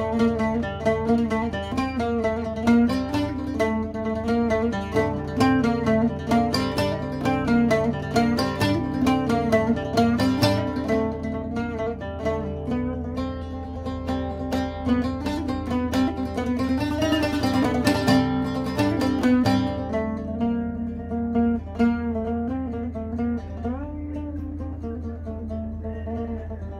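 Oud, a fretless short-necked lute, played with a plectrum: a fast melodic passage of quickly picked single notes, which thins out and softens over the last few seconds.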